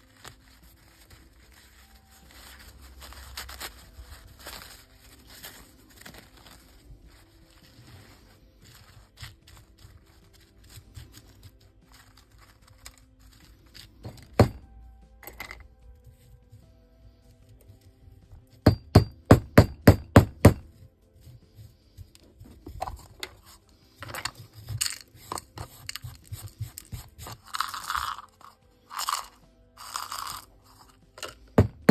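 Background music, with a quick run of about eight sharp knocks a little past the middle and more knocking and crunching near the end: a hammer breaking pea gravel on a paving block.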